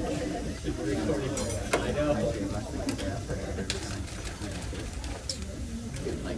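Indistinct background chatter of several voices in a room, with a few brief sharp clicks and rustles scattered through it.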